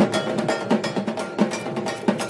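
Fast, steady festival percussion music in the dhak style, with drum strokes under a metallic clanging beat like a bell-metal kansar.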